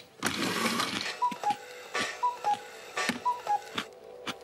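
A short rushing whoosh, then a cuckoo clock's two-note call, a higher note then a lower one, three times about a second apart, with scattered clicks.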